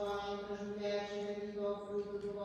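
A single voice chanting a liturgical text on a nearly steady reciting pitch, the syllables running on without a break.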